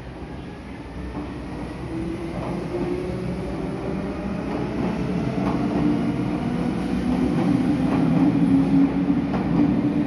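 Meitetsu 6500 series electric train pulling out of a station, its motors and wheels growing louder as it gathers speed past the platform, with occasional wheel clacks over rail joints.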